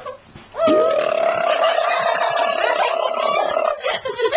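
A child's long, loud yell that rises in pitch about half a second in and is then held at one pitch for about three seconds before breaking off.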